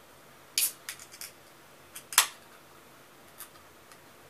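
Aluminium beer can being handled: a few light clicks, then one sharp crack about two seconds in as the pull tab is opened.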